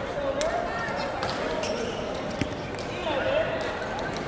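Crowd chatter in a large sports hall, with several sharp clicks of racquets striking shuttlecocks on nearby badminton courts and a couple of sneaker squeaks on the court floor, one near the start and one after about three seconds.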